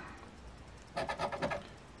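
Coin scraping the scratch-off coating of an instant lottery ticket: a quick run of short rasping strokes about a second in, lasting under a second.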